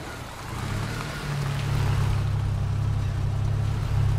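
Car engine sound effect: a low, steady engine hum with a rushing hiss, growing louder over the first two seconds.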